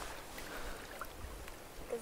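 Faint steady outdoor ambience of wind and small lake waves lapping at the shore: a low rumble under a soft, even hiss.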